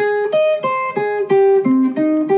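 F-hole electric jazz guitar playing a single-note melodic line, one note after another at about three notes a second.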